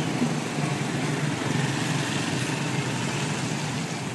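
Street traffic: small motorbike engines running as the bikes pass close by, with a city bus moving along the road, as a steady mix of engine and road noise.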